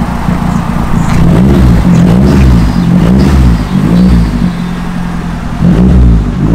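A Mazdaspeed 3's turbocharged 2.3-litre four-cylinder is revved in about four quick blips, rising and falling in pitch, starting about a second in. It then runs steadier for a moment before another rev near the end.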